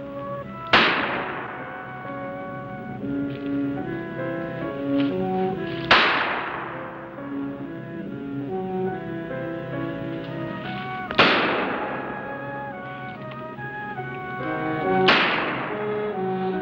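Film score of held orchestral notes, cut through by four sharp gunshots a few seconds apart, each ringing out briefly.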